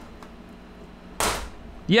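Plastic bottom case of an HP 15 laptop coming away from the chassis, its clips letting go with one short snap a little over a second in. The snap sounds enough like something breaking that the repairer wonders if he broke it.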